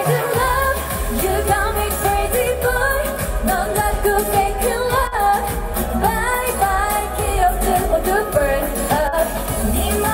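K-pop girl group performing live: female vocals sung into handheld microphones over a pop dance track, with the bass coming in just at the start.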